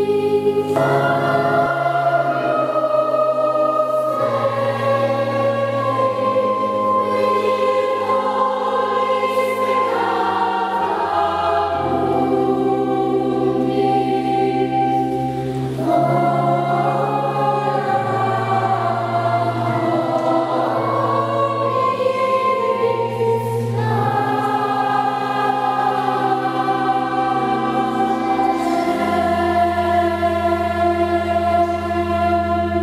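Children's choir of treble voices singing a slow piece in long held notes, with an electric keyboard holding low sustained chords beneath them.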